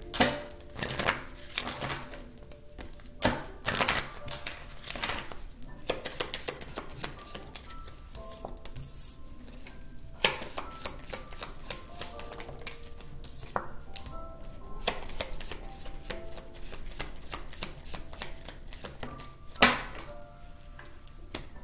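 A deck of oracle cards being shuffled by hand: an irregular run of quick card clicks and slaps, thickest around the middle. Soft background music of sparse single notes plays underneath.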